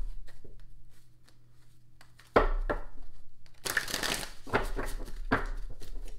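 Hands handling small objects on a table: rustling and crinkling with a few knocks and clicks, the loudest burst about four seconds in.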